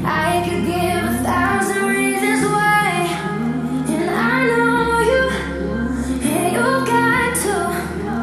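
Pop song with a female lead vocal singing over sustained bass and synth chords, mixed as 8D audio that pans the sound around the listener's head.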